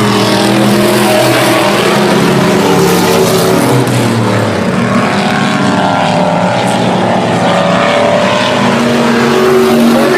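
Several street stock race cars' engines running hard around a dirt oval, loud and steady, with overlapping engine notes rising and falling as the cars lap.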